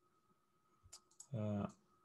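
A few quick computer mouse clicks about a second in, followed by a short voiced hesitation sound from a person.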